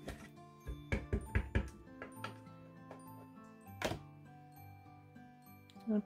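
Clear acrylic stamp block tapped several times on an ink pad, then one louder thunk near four seconds in as the block is pressed onto cardstock. Soft background music plays throughout.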